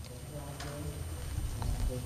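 A few keystrokes on a laptop keyboard, with faint voices in the room.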